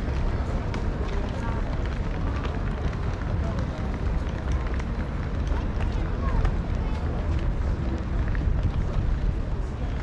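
Footsteps of someone walking on stone paving, over a steady low rumble on the microphone, with passers-by talking indistinctly in the background.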